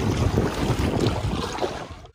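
Wind buffeting the microphone over water sounds from a small boat being paddled across a lake, fading away near the end.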